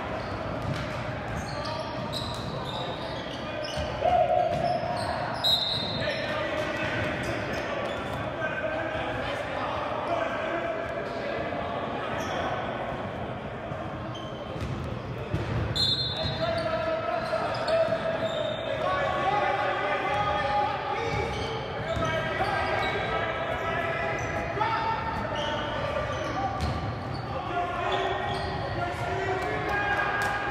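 Live basketball game in an echoing gym: a ball dribbling on the hardwood court, with players and spectators calling out throughout. Two short high-pitched tones sound about five and sixteen seconds in, and a louder shout comes about four seconds in.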